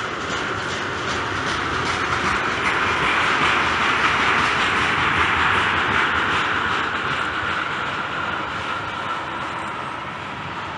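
Freight train of tank cars rolling past, steel wheels running over the rails with a steady rush of wheel noise and faint clicks at the rail joints. It grows louder toward the middle and eases off near the end.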